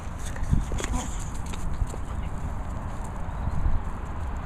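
Dogs playing with soft toys on grass: scattered light knocks and rustles, most in the first second, over a steady low rumble on the microphone.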